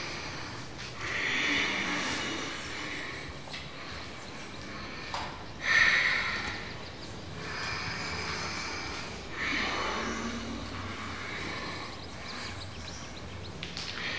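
Slow, deep audible yogic breathing (ujjayi) during Ashtanga practice: several long hissing inhales and exhales, each swelling and fading, the loudest about six seconds in.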